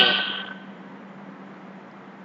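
The last of a recorded spoken vocabulary word fading out over the first half second, then a pause holding only a steady low hum and faint hiss.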